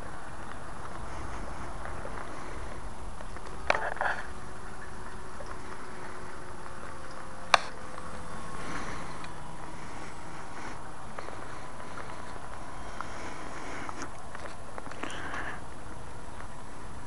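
Distant electric RC aerobatic plane in flight: a faint steady drone from its RC Timer 1150kv brushless motor and 9x4 propeller that drifts slowly in pitch, over a constant rushing background. A few sharp clicks, near four seconds and seven and a half seconds in.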